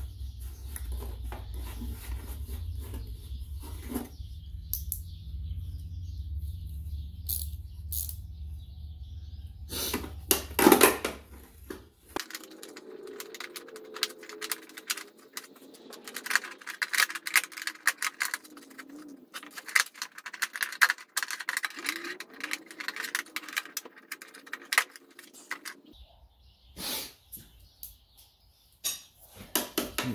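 Scattered clicks, taps and light metallic rattles of hands and tools working in a car's cowl panel, with a cluster of louder knocks about ten seconds in. A low hum underneath stops about twelve seconds in.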